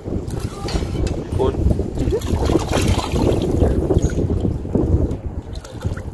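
Strong wind buffeting the microphone: a loud, gusting low rumble.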